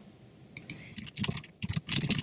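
Typing on a computer keyboard: a quick, uneven run of key clicks that starts about half a second in.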